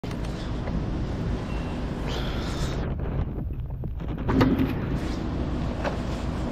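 Steady low rumble of a running vehicle engine, with wind noise on the microphone and a brief knock about four and a half seconds in.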